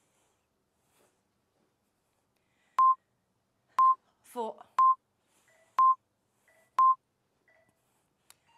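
Electronic countdown beeps from a workout interval timer: five short, identical high beeps, one a second, starting about three seconds in, marking the last five seconds of the exercise interval.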